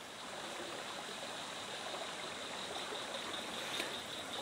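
Shallow river running over rocks: a steady rush of flowing water, growing slightly louder.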